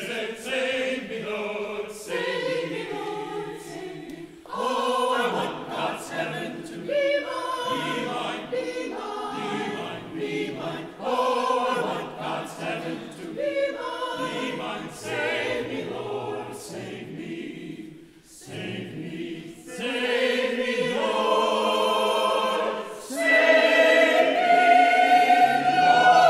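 Church choir of mixed men's and women's voices singing an anthem, phrase after phrase, with a short break about two-thirds of the way through, then growing louder for the last few seconds.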